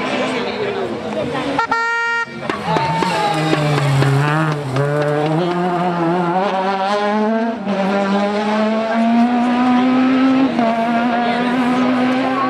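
Rally car engine revving hard under acceleration, its note climbing and dropping back at each upshift about every three seconds. A brief steady tone sounds about two seconds in.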